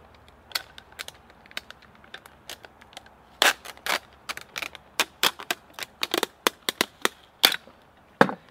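Freezer tape being peeled and torn off its roll: a run of sharp, irregular crackles and snaps, the loudest about three and a half seconds in and near the end.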